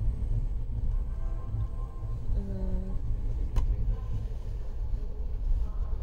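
Steady low rumble of a train running slowly, heard from inside the coach, with a brief faint voice near the middle and a single sharp click a little after it.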